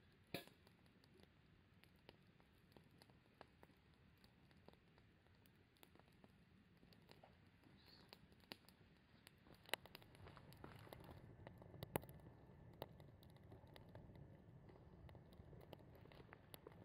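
Faint wood campfire crackling: scattered sharp pops and snaps from the burning sticks, with a couple of louder snaps around ten and twelve seconds in.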